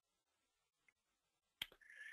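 Near silence: room tone, broken near the end by one short, sharp click and then a faint brief sound.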